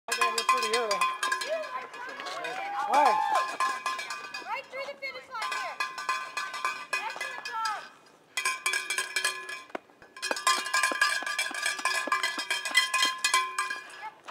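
A bell shaken rapidly and continuously, with fast rattling strikes over a ringing tone, broken off twice briefly, about eight and ten seconds in.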